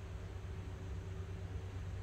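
Steady low hum of room noise with no distinct events.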